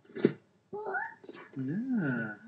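Voices from a home video: a young child's high-pitched whining vocalising about a second in, then a drawn-out "yeah" near the end.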